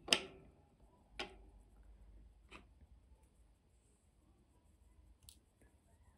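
A few light, separate clicks from small metal embroidery scissors being handled and set down on the table after snipping the thread; the loudest click comes right at the start, then three softer ones spread over the next five seconds.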